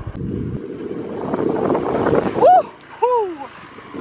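Wind rushing over the microphone, building up over about two seconds. Then a voice makes a short rising 'ooh' followed by a falling one.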